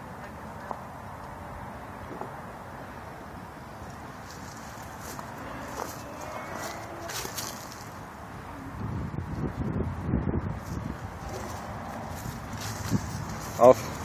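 Quiet outdoor background with a few soft clicks and rustles, then a stretch of irregular low rumbling on the microphone about two-thirds of the way in, with a man's voice starting right at the end.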